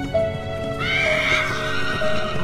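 A horse whinnying, one long call starting about a second in, over film-score music with long held notes.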